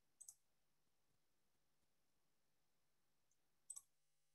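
Near silence with two faint double clicks, one just after the start and one near the end.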